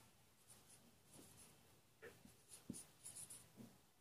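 Faint strokes of a felt-tip marker writing on a whiteboard: a string of short scratches in the second half.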